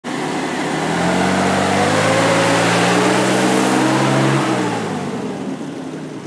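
1947 Dodge Power Wagon's flathead straight-six driving past, its note climbing slowly under acceleration, then dropping about four seconds in and fading as the truck moves away.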